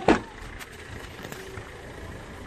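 A car door on a 2006 Hyundai Verna slammed shut once, sharp and loud, just after the start, followed by a steady low rumble.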